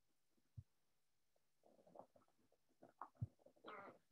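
Faint handling sounds as a ski strap is pulled tight around a plastic ski boot, strapping the boot shut in place of a broken buckle: soft rubbing with two low knocks, one about half a second in and one about three seconds in.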